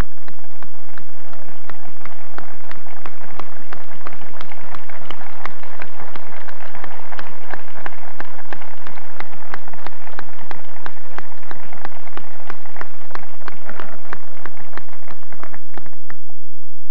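Large crowd applauding: dense, steady clapping that swells fuller in the middle and cuts off suddenly at the end.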